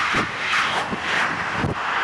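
NMBS electric passenger train passing close at high speed: a steady rushing of air and wheels on rail, with low thumps about every three-quarters of a second as the bogies and wheelsets go by.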